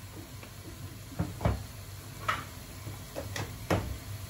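A handful of sharp clicks and knocks from seasoning containers being picked up and handled, over a low steady hum.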